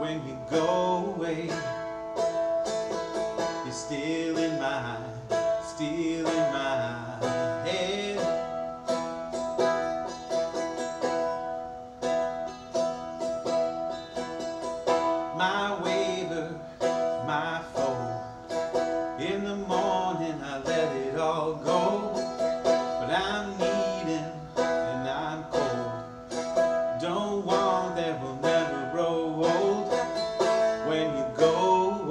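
Seagull Merlin, a four-string dulcimer-style instrument, strummed in a slow song, one steady droning note ringing under the changing chords. A man's voice sings over it at times.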